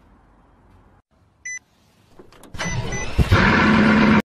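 A short electronic beep from a touchscreen car key, then a supercar engine starting: a loud rush with two more short beeps over it, catching a little past the three-second mark and running on with a steady low hum.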